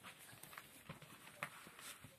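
A few faint taps, about half a second apart and the loudest halfway through, with soft rustling as a cat's paws and claws move on a wooden floor close to the microphone.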